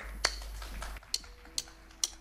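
Drumsticks clicked together to count a band in: sharp clicks, the last ones evenly spaced about half a second apart, over a steady amplifier hum, with faint held notes from an instrument in the second half.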